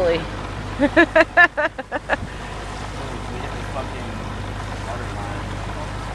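A person laughing in a quick run of short bursts about a second in, over the steady low hum of the sailboat's engine and water rushing along the hull as it motors ahead.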